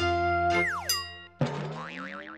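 Short cartoonish logo jingle. A held chord plays first, then about half a second in the pitch slides steeply downward. About one and a half seconds in, a sudden new note comes in with a wobbling pitch.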